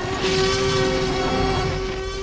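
A giant animated Tyrannosaurus roaring: one long, loud, horn-like roar held on a steady pitch.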